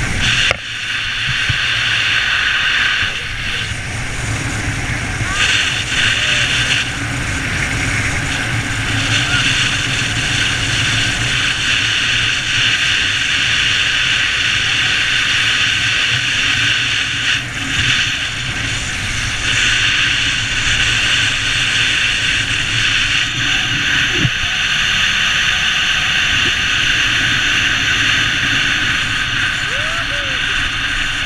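A moving car's steady road and wind noise, picked up by a camera over the bonnet: a low rumble with a hiss above it that fades and returns a few times.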